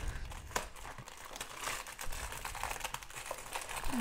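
Cardboard candy box being torn open by hand, with the plastic wrapper inside crinkling: irregular crackling and rustling with a few sharper snaps.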